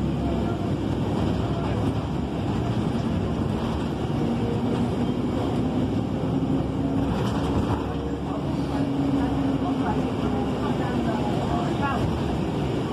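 Steady engine and road noise inside a moving city bus, with a faint whine that rises a little in pitch about four seconds in as the bus gathers speed.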